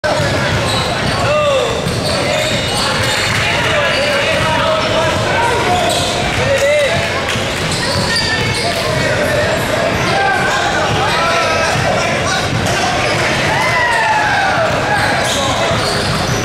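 Echoing gym ambience: basketballs bouncing on a hardwood court, a few short sneaker squeaks, and the chatter of many voices filling a large hall.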